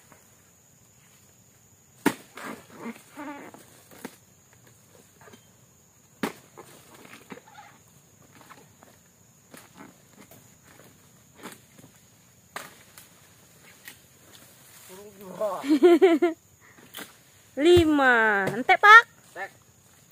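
A dodos, a chisel blade on a long pole, chopping into the stalk of an oil palm fruit bunch: sharp knocks every few seconds. Near the end come two louder stretches of a pitched, wavering sound, the second one falling.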